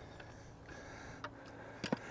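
Quiet outdoor background with a low wind rumble, and a couple of faint light clicks near the end from handling a plastic bird-seed filler.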